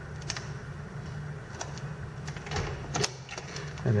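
Buttons of a door keypad lock being pressed one by one, a string of sharp clicks, with a louder click about three seconds in as the code is accepted and the lock releases.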